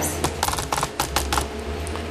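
A quick run of about eight sharp clicks in a little over a second, over a steady low hum.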